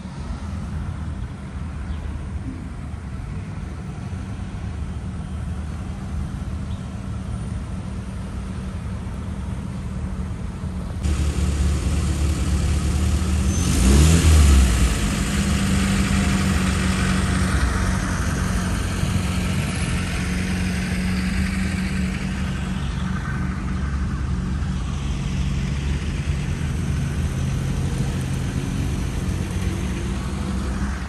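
City road traffic: a steady drone of car engines and tyres. It steps up suddenly about a third of the way in, and near the middle a vehicle accelerates past, the loudest moment, its engine rising in pitch.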